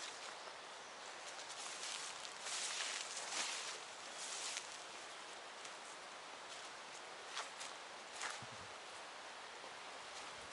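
Footsteps swishing through tall grass and undergrowth, with leaves and stems rustling; the brushing comes loudest and densest in the first half and thins out later.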